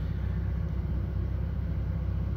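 Steady low background rumble with a faint hum, unchanging through a pause in the speech.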